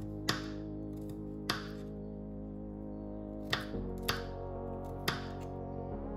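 Kitchen knife chopping a garlic clove on a wooden cutting board: about five separate sharp strikes, spaced unevenly. Background music with sustained chords plays throughout.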